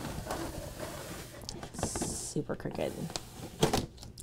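A sheet of black craft vinyl being handled and peeled up off a sticky Cricut cutting mat, with a short hissing rip about two seconds in and a sharp knock near the end. Quiet mumbled speech runs underneath.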